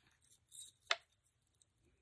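Faint clinks and ticks of a metal rope chain and pendant being handled, with one sharper click a little under a second in.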